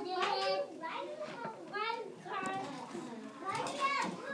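Young children's voices chattering and calling out indistinctly, several short high-pitched phrases one after another.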